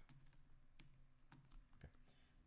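Faint keystrokes on a computer keyboard: a few separate key clicks while a word is typed.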